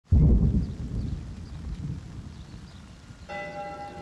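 Trailer sound design: a sudden deep rumble that slowly fades. About three seconds in, a sustained bell-like ringing tone with several pitches begins.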